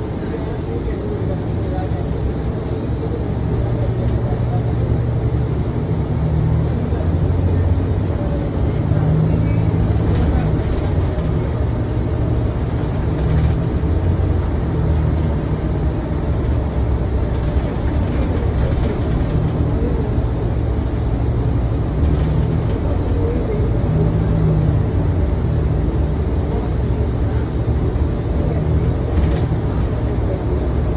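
Interior of a New Flyer Xcelsior XDE40 diesel-electric hybrid transit bus under way: a steady drivetrain hum and road noise, with a low drone that swells and fades as the bus changes speed, and occasional light rattles.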